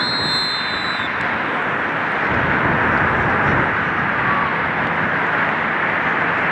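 Steady rushing outdoor noise with no clear pitch, growing slightly louder. In the first second there is a short high whistle tone lasting about a second.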